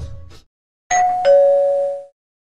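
Two-note ding-dong doorbell chime: a higher tone about a second in, then a lower one, both held and ringing out together. The tail of dance music fades out just before it.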